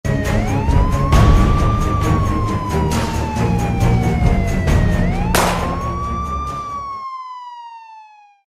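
Crime-segment intro jingle: a music track with a steady beat under a wailing police-style siren sound effect. The siren rises and then slowly falls twice. The beat stops about seven seconds in, and the siren's last fall fades out alone.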